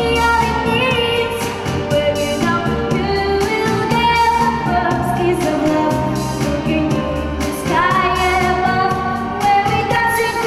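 A young girl singing a pop song into a headset microphone over a backing track with a steady bass beat.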